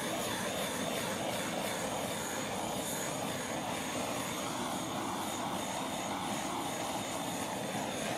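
Handheld blow torch flame hissing steadily as it is swept over wet acrylic paint, used to bring up cells in the paint.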